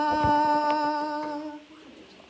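Children's voices holding one long sung note at a steady pitch, which fades out about a second and a half in.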